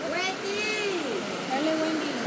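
People's voices calling and talking, with the steady rush of a river underneath.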